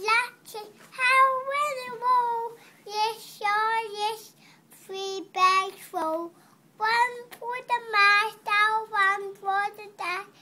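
A toddler singing a tune in a high child's voice, in short phrases of held notes with brief breaths between them.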